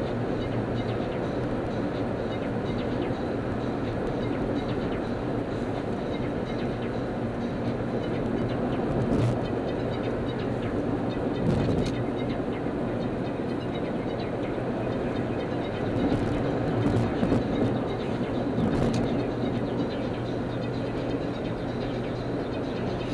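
Car driving at freeway speed: steady road and engine noise, with a low hum, heard from the moving car. A few brief thumps come through in the second half.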